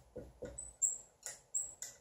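Dry-erase marker writing on a whiteboard: a quick series of short strokes, several with thin high squeaks.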